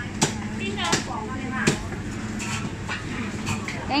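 A butcher's cleaver chopping pork on a chopping block: three sharp chops about 0.7 s apart in the first half, over background voices and a steady low hum.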